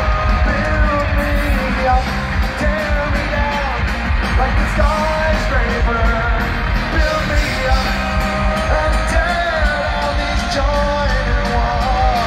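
Punk rock band playing live through a large PA: electric guitars, bass and drums with a sung lead vocal, heard from within the crowd.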